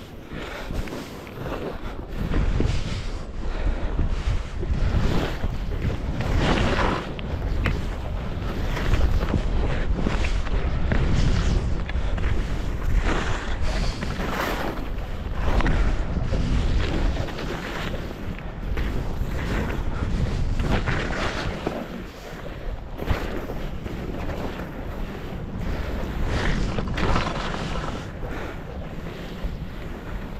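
Skis scraping and hissing over packed snow, swelling with a swoosh every second or two as the skier turns, under wind rumbling on the microphone from the downhill speed.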